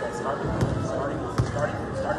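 A basketball bouncing twice on a hardwood gym floor, about a second apart, each bounce echoing in the hall.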